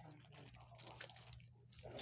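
A dog licking, faint wet smacking sounds, over a low steady hum.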